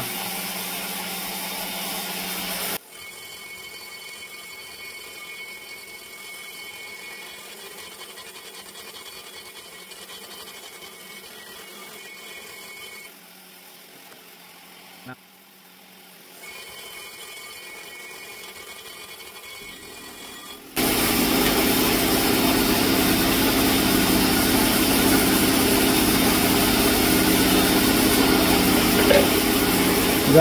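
Rotary die grinder spinning a carbide porting burr against the cast aluminium port walls of an RB26 cylinder head. It cuts loudly for about the first three seconds, drops to a much quieter steady high whine through most of the middle, then grinds loudly and steadily again for about the last nine seconds.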